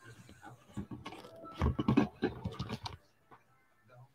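A person getting up out of a leather recliner and moving close past the microphone: clothing rustling and dull low knocks, loudest about halfway through.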